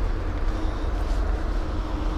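Steady low outdoor rumble with a faint hum, and no distinct sound event.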